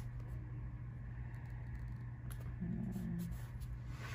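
Soft sticker and paper handling on a planner page, a few faint clicks over a steady low electrical hum. A short low-pitched sound, under a second long, comes about two and a half seconds in.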